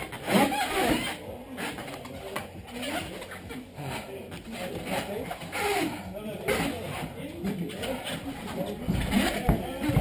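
Indistinct human voice sounds with scattered scuffs and knocks of bodies moving on a foam mat during MMA ground grappling.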